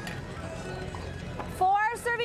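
A sharp smack of a handball about one and a half seconds in, followed near the end by a loud, drawn-out shout from a player.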